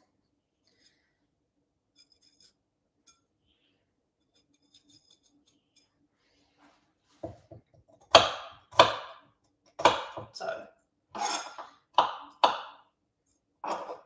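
Knife cutting ginger on a wooden chopping board: about ten sharp cuts at roughly two a second, starting about halfway through. Before that, only faint scraping as the ginger is peeled with the knife.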